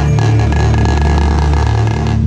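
Marching snare drum played close up in a rapid, dense run of strokes over sustained low notes from the rest of the percussion ensemble; the snare stops right at the end.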